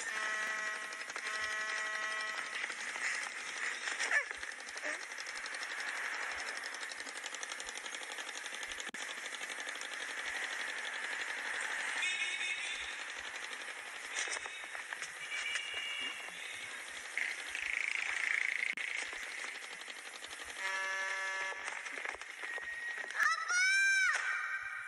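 Busy city traffic noise with car horns honking several times, each blast about a second long: near the start, twice in the middle, and again shortly before the end. A high, wavering cry starts just before the end.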